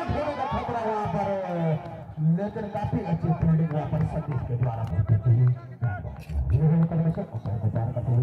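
Men's voices talking and calling out over crowd chatter.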